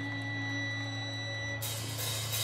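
Live stage amplifiers idling with the band's instruments plugged in: a steady low hum and a thin high whine. Near the end the whine stops and a high hiss comes in.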